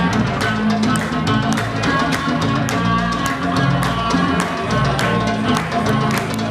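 A band playing: drum kit keeping a steady beat under electric guitar.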